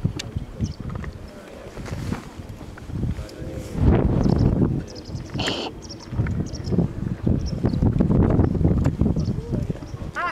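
Wind buffeting the microphone in uneven gusts, loudest about four seconds in and again near the end.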